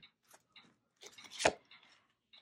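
An oracle card being drawn from the deck and flipped over: a few faint ticks, then a brief sliding rustle of card stock ending in one sharp snap of the card about one and a half seconds in.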